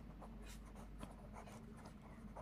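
Pen scratching on paper as words are written out in short, faint strokes.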